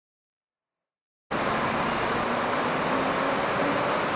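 Total silence, then a little over a second in, steady street noise with passing traffic cuts in abruptly.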